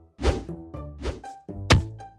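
Bouncy background music with two loud thunking hits about a second and a half apart, and short pitched notes in between.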